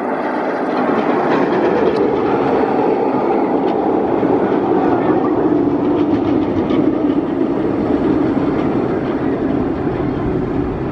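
Giovanola steel hyper coaster train rolling along its track, a continuous deep rumble that swells in the first second and then holds steady, sinking slightly in pitch.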